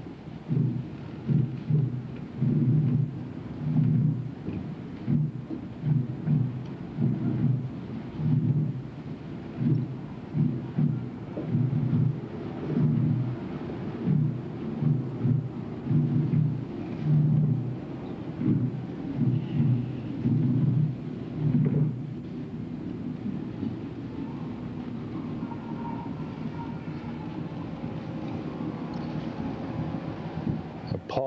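Slow, steady drum beats of a funeral procession, about one to two low, muffled thumps a second. They stop about two-thirds of the way through, leaving a steady low background.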